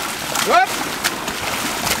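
Open-sea water splashing and washing as a swimmer does front crawl close by, with a short rising whooped shout of encouragement about half a second in.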